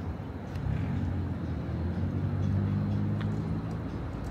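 A heavy engine running with a low, steady drone that swells about half a second in and eases near the end, over city background noise.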